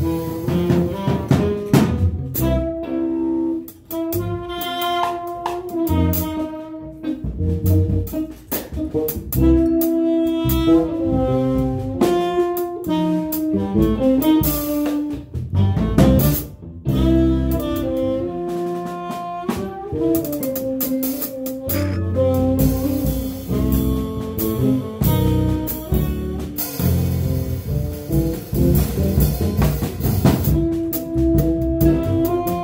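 A live jazz band playing: saxophone carrying the melody over electric guitar, electric bass and a drum kit with cymbals.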